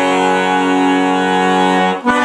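Monterey piano accordion holding one steady sustained chord with bass notes under it; the chord breaks off right at the end.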